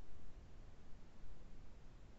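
Faint, uneven low rumble of background noise, with no distinct sound events.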